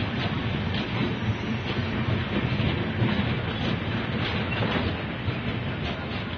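Passenger coaches of an express train rolling past close by: a steady rumble with an uneven clatter of wheels over rail joints, and a brief faint wheel squeal near the end.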